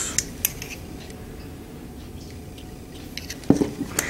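Low room noise with a few light clicks near the start and a sharper double tap about three and a half seconds in: small hard nail-art tools and a palette being handled and set down.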